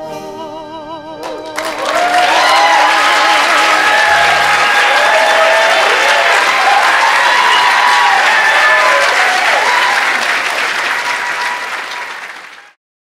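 A male singer's final held note, sung with vibrato, ends about a second in. The audience then breaks into loud applause with cheering, which fades away near the end.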